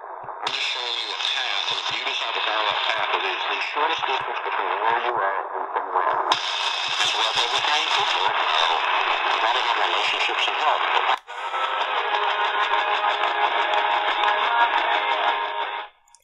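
C.Crane CC Skywave portable radio playing evening medium-wave (AM) broadcast stations through its small speaker while it is tuned from station to station: speech and music, changing as the frequency steps, with a brief drop-out about eleven seconds in.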